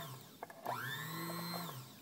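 Singer Heavy Duty sewing machine's electric motor running free under the foot control: it winds down just after the start, spins up again about half a second in, runs for about a second and winds down near the end. The motor turns without driving the needle or bobbin winder, which could mean the drive belt has slipped off its cogged wheel.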